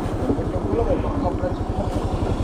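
Kymco Super 8 scooter's carburetted engine running steadily with an even, low pulsing beat, and not stalling, after its main and pilot jets were cleaned and its float and TPS adjusted to cure stalling on throttle.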